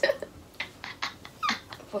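Women's soft, breathy laughter in a few short bursts.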